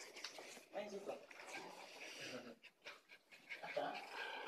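Low murmured voices in the room, with a small dog panting.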